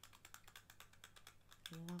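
Fingernails tapping quickly and lightly on a Paco Rabanne Lady Million perfume bottle, a faceted gold-and-glass bottle, at about ten taps a second.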